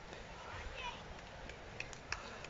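Outdoor hillside ambience: a steady hiss with faint spectators' voices calling about half a second to a second in, and a few light footfalls of runners climbing past near the end.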